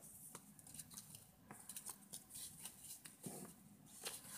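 Near silence with faint scattered clicks and taps of paper and cardstock pieces being handled and set down on a cutting mat.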